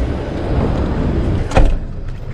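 A car's rear passenger door shut with a single solid thud about one and a half seconds in, over a steady low rumble of street traffic.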